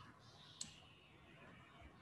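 Near silence with two faint, short clicks: one at the very start and one just over half a second in.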